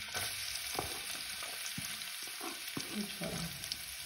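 Chopped onion sizzling as it goes into hot cooking oil in a metal pot, a steady frying hiss. Light clicks and scrapes of a wooden spoon against the pot come through it now and then.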